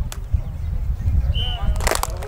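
Outdoor field ambience: low wind rumble on the microphone under faint children's voices. Partway through there is a short high chirp-like tone, and near the end a brief sharp hiss.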